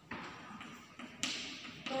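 Chalk tapping and scraping on a chalkboard in about four short strokes as words are written, the loudest just past the middle.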